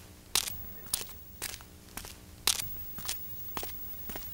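A person's footsteps crunching at a steady walking pace, about two steps a second.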